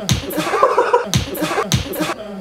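A hand slapping a man's face, about four quick slaps in two seconds, each with a short low thump that drops in pitch.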